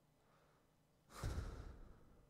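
A man sighs, breath blown out onto a headset microphone about a second in, a short rush that dies away within about half a second.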